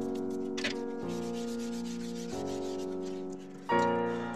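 Piano music, with a soft rubbing on drawing paper beneath it for a second or two from about half a second in, as charcoal shading is worked with a hand-held tool.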